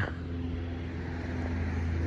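A steady low mechanical hum at one constant pitch, slowly growing louder.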